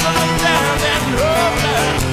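Rock band music: drums keeping a steady beat under guitars, with a bending melody line.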